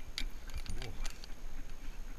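A gundog moving through dense weeds: a few sharp clicks and jingles from its collar, brush rustling, and short breaths.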